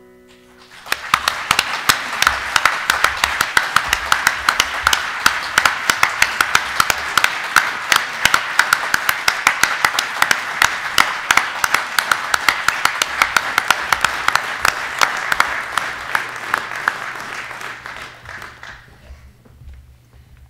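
Audience applause: dense clapping that starts about a second in, holds steady, then thins out and dies away over the last few seconds.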